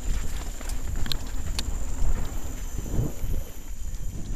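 Mountain bike rattling down a rough dirt trail: tyres rumbling over dirt and roots, and the bike clattering with irregular knocks and a few sharp clicks, over wind rumble on the microphone.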